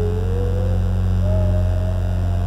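Harrison Instruments theremin playing a thin, sliding melody line that glides upward in pitch, breaks off briefly just under a second in, then returns on a higher held note, over a steady low drone.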